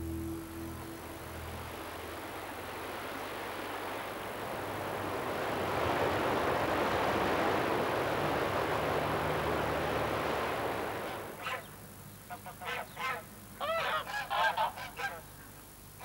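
Water rushing over a weir, swelling to a steady rush and then dropping away about eleven seconds in. Then a string of honking waterfowl calls, several in quick succession.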